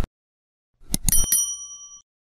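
Sound effect of a subscribe-button animation: a click at the very start, then a cluster of clicks about a second in and a bright bell ding whose ringing fades away.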